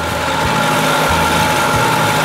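1975 Evinrude 40 hp two-stroke outboard motor running steadily, a constant engine note with a steady whine and hiss over it.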